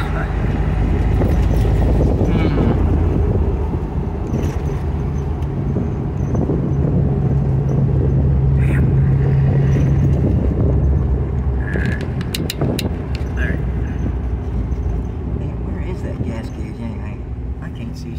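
Jeep engine running under way while driving, with road and wind noise in the cab; the engine note holds steady through the middle and eases off near the end, with a few sharp clicks about twelve seconds in.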